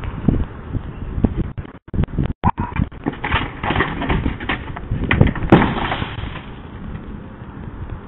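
A tumble on a concrete driveway: a run of irregular knocks, scrapes and thumps as a container of leaves tips over and a person falls, with the loudest thumps a little after five seconds in. The sound is thin and muffled, as picked up by a security camera's microphone.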